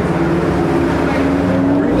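A road vehicle's engine running as it goes by, a steady drone over a low rumble.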